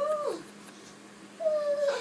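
A toddler's high-pitched vocalizing: a short rise-and-fall squeal at the start and a longer falling wordless call near the end.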